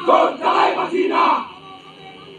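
A crowd of marching protesters shouting a political slogan together: three loud shouted beats in the first second and a half, then a brief lull.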